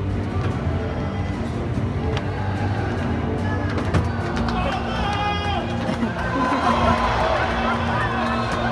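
Live orchestra playing slow, sustained music, with audience voices rising over it in the second half.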